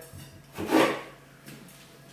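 A knife cutting through a raw potato on a plastic cutting board: one short rasping stroke less than a second in, and a fainter scrape about a second later.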